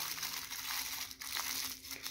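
Aluminium foil crinkling and crackling as it is crumpled by hand around a small paper ball.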